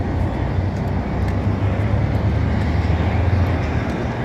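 City transit bus driving past close by, a steady low engine rumble mixed with street traffic.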